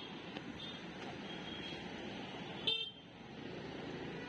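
Busy street traffic noise from passing motorbikes and auto-rickshaws, with one short horn toot about two-thirds of the way through, the loudest sound.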